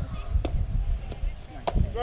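A bat hitting a pitched softball, a sharp crack near the end, after a fainter knock about half a second in.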